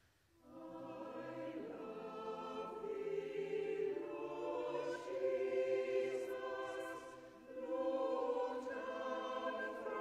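Small mixed choir singing a carol in a church. The voices enter about half a second in after a brief silence, and there is a short break between phrases about two and a half seconds before the end.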